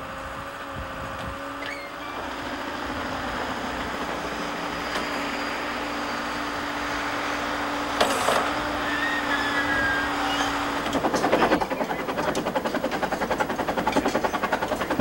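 A backhoe's engine runs steadily, with a clank about eight seconds in as the machine works. Near the end a fast, even pulsing takes over.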